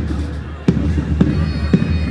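Pipe band drums beating a steady march, about two strikes a second, over a low steady hum. Faint high pipe notes come in during the second half as the bagpipes start up.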